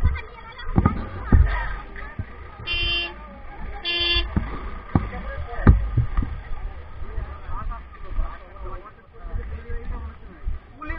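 Two short vehicle-horn toots, about three and four seconds in, over the talk of a roadside crowd, with a few dull thumps.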